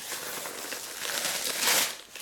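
Gift-wrap and tissue paper rustling and crinkling, loudest near the end.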